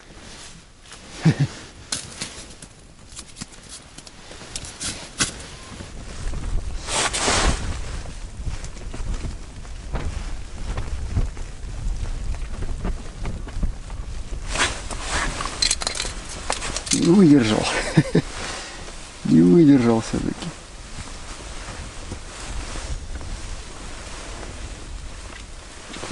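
Rustling of clothing and tent fabric with small handling clicks and knocks inside an ice-fishing tent, then two short wordless hummed voice sounds about two-thirds of the way through.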